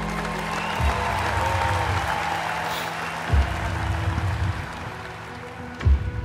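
Large stadium crowd applauding, under soundtrack music with a deep drum hit about every two and a half seconds.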